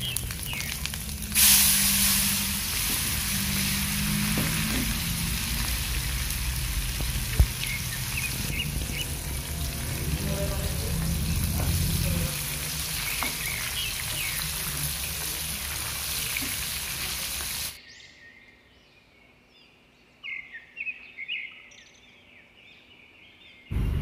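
Shallots, garlic, chilies and tomatoes sizzling in hot oil in a frying pan, the ingredients for sambal terasi being fried before grinding. The sizzle grows louder a second or so in and cuts off suddenly near the end, leaving only faint chirps.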